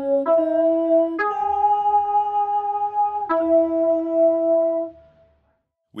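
A short melody of held notes in a synth keys tone, each note steady and stepping cleanly to the next, ending about five seconds in. It is a sung melody turned into MIDI by Dubler 2 and played back as the instrument, being sung in so Dubler can suggest a key.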